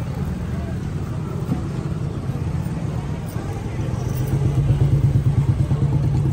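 An engine running close by, a low pulsing rumble that grows louder about four seconds in, with faint voices over it.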